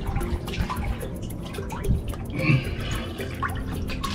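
Water sloshing and lapping close around a camera held at the surface, with irregular small splashes and drips.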